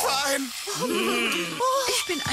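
A cartoon character's voice, speech-like sounds without clear words.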